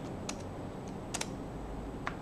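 A few faint, sharp clicks at a computer: one about a third of a second in, a quick double click a little past one second, and another at the end.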